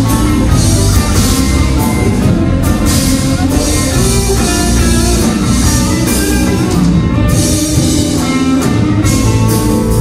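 A live band playing with electric guitar, bass guitar and drum kit. Cymbals ring throughout.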